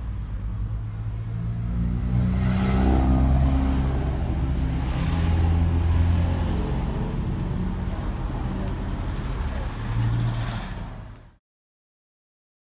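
A motor vehicle's engine running close by, its low hum rising and falling in pitch as it revs. The sound cuts off suddenly near the end.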